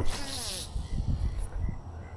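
Fishing line whizzing off the reel and through the rod guides during a cast: a buzzy whine that falls in pitch and fades over about half a second, followed by a few soft low knocks.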